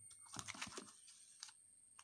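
Faint rustling and light taps of a sheet of paper being handled and shifted on a table, in a short cluster about half a second in and once more a little later.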